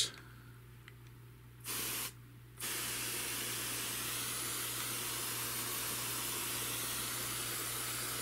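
Water spraying from a sprayer wand onto worm-bin bedding. There is a short burst about two seconds in, then a steady spray hiss from a little later on.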